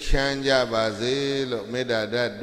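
A Buddhist monk's male voice chanting Pali verses in a steady, near-level intoning pitch, syllable after syllable.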